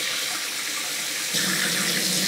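Kitchen mixer tap running steadily into a sink as a muddy dog's paws are rinsed; the splashing gets a little louder and fuller about one and a half seconds in.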